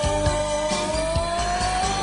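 A woman's singing voice holds one long note on the word "amor", rising slowly in pitch, over a pop ballad band backing with a steady drum beat.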